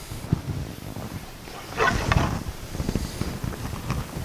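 Footsteps on a hardwood floor as two people walk apart, with a short throaty vocal sound about two seconds in.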